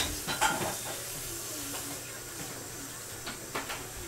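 Quiet indoor room sound with a faint steady hiss, broken by a few light clicks and knocks in the first second and a couple more a little over three seconds in.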